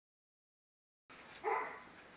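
Dead silence for about a second, then faint background noise and one short call that falls in pitch, about a second and a half in.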